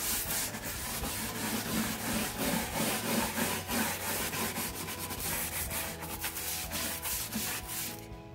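Plastic-bristled scrub brush scrubbing a wooden furniture panel wet with Krud Kutter cleaner-degreaser, in quick repeated back-and-forth strokes.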